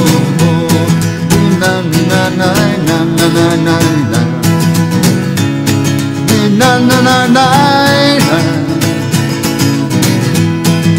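Steel-string acoustic guitar strummed in a steady rhythm, an instrumental break in the song. A man's wordless vocal line slides over it in the second half.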